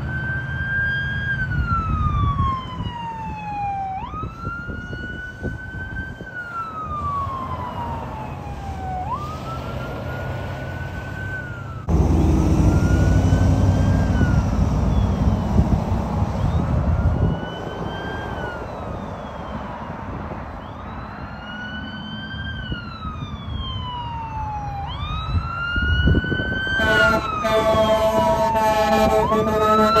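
Sirens of a fire battalion chief's pickup and a Sutphen fire engine on a run. The siren wails again and again, each cycle jumping quickly to its peak and then sliding slowly down, about every four to five seconds. Passing road traffic is briefly loud in the middle, and a steady horn blast joins the siren near the end as the engine comes by.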